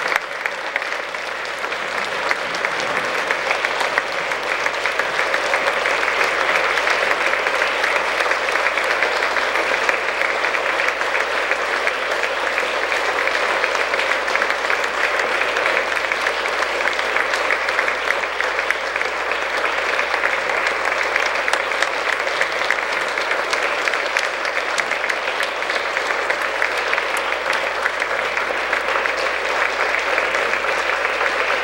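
Large audience applauding. The clapping builds over the first few seconds, then holds steady and dense throughout.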